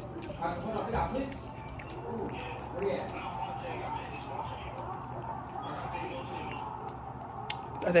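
A person chewing a mouthful of food, with soft wet mouth sounds, over faint voices in the room; a man starts speaking at the very end.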